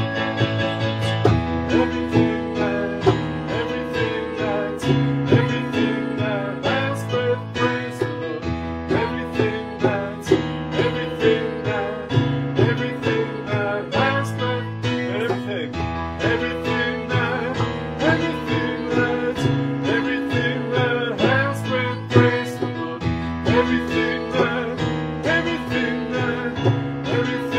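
Voices singing a lively worship song over instrumental accompaniment with a steady beat.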